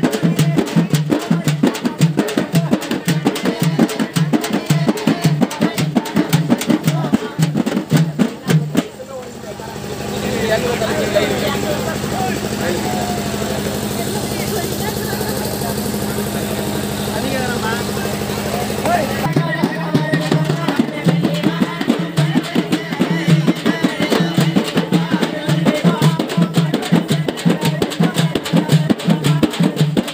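Double-headed stick drums beaten in a fast, driving folk rhythm, with voices over them. About nine seconds in the beat gives way to a steady drum roll for some ten seconds, then the rhythm picks up again.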